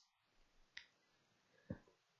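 Near silence: room tone with two faint short clicks, one a little under a second in and another near the end.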